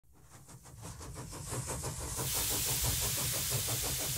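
Steam engine chuffing with hiss, in a rapid even beat, fading in from silence and growing louder over the first two seconds, then running steadily.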